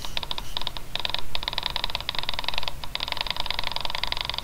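Rapid, buzzy electronic chatter from the computer while it runs keypoint tracking over an image sequence. It starts just after tracking is launched, drops out briefly a few times, and runs on until just before speech resumes.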